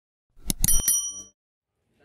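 Logo animation sound effect: a few sharp clicks about half a second in, then a bright bell-like ding that rings briefly and fades out.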